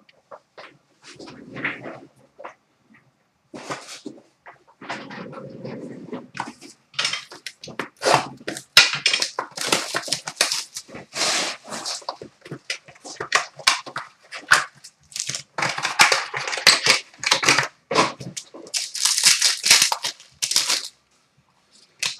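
Plastic shrink wrap crinkling and tearing as a trading-card box is unwrapped, with cardboard handling: sparse rustles and knocks at first, then a busy stretch of sharp crackling that stops just before the end.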